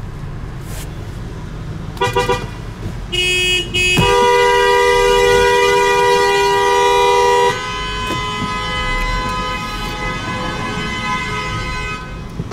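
Car horn honking, heard from inside a car: two short toots about two seconds in and a lower one a second later, then a long two-note honk held for about three and a half seconds, followed by a quieter horn tone that keeps sounding to the end. A low traffic rumble runs underneath.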